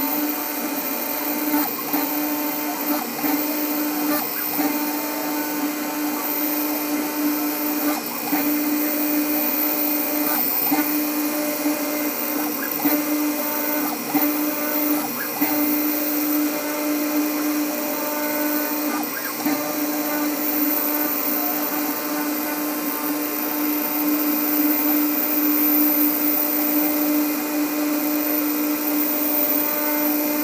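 New Hermes Vanguard 4000 engraving machine running a job, engraving anodized aluminum with a spinning diamond drag bit. Its motors give a steady hum that swells and dips slightly as the head moves.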